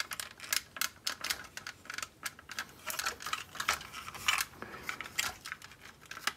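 Parts of a transforming robot action figure clicking and knocking as they are handled and its tabs are pushed into their slots: a run of small, irregular clicks.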